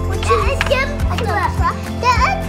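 Music with a steady bass line, mixed with high-pitched children's voices.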